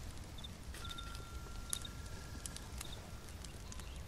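Layered night-forest ambience: a steady low rumble with scattered sharp clicks and crackles, short high chirps in pairs, and a faint trill. A thin held whistle-like tone enters about a second in and stops past the middle.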